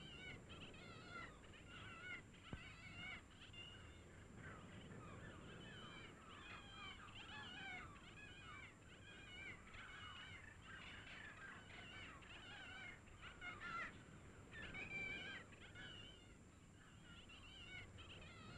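Faint birds calling, many short chirping calls one after another, over a thin steady high-pitched hiss tone.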